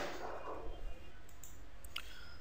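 A few faint computer mouse clicks over low steady room hiss, from mouse strokes being drawn.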